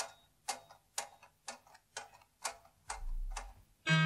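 Steady clock-like ticking, about two ticks a second, each tick sharp and short.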